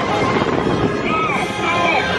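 Riding the Incredicoaster roller coaster: a steady rush of wind over the microphone and the rumble of the moving train, with riders' voices shouting in short rising-and-falling yells.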